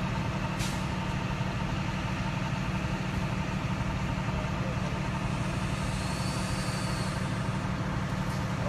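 A vehicle engine idling steadily with a low hum, with a single brief click just over half a second in.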